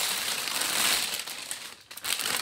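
A clear plastic bag of embroidery floss crinkling as it is picked up and handled. It is a continuous crackly rustle that dies away just before the end.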